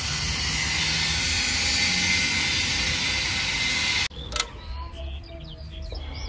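A loud, steady hiss that cuts off abruptly about four seconds in. It gives way to quieter outdoor ambience with a single click and birds chirping.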